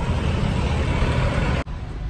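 Wind buffeting the phone's microphone, a steady rough rumble with hiss above it, cut off abruptly near the end.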